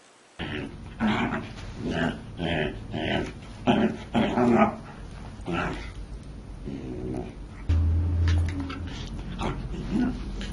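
A corgi vocalizing in a run of short calls, about two a second, then trailing off into softer ones, with a low rumble for about a second near the end.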